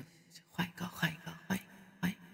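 Soft, low-level speech, close to a whisper: a voice talking quietly in short phrases over a faint steady hum.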